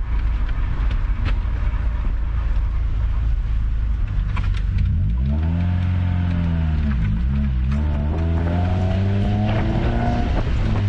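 Honda H22A1 2.2-litre DOHC VTEC four-cylinder heard from inside the car's cabin while driving: engine and road rumble at first, then the revs climb about five seconds in, drop away briefly at a gear change about seven seconds in, and climb again under acceleration.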